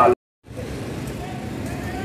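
A spoken word cut off by a brief dropout, then steady outdoor street and traffic noise with a vehicle running.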